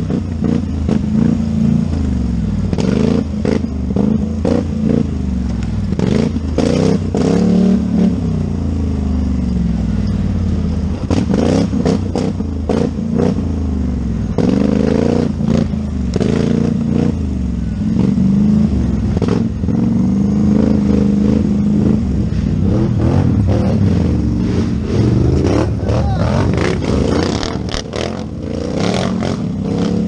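Polaris Scrambler 4x4 ATV engine revving up and down over and over as the throttle is opened and closed, with frequent clattering knocks from the quad jolting over rough ground.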